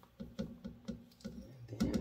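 Squeeze-handle sifter clicking about four to five times a second as its handle is pumped, sifting ground dried hot peppers.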